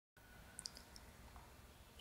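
Near silence with a few faint computer mouse clicks: two close together about half a second in and one more just before one second.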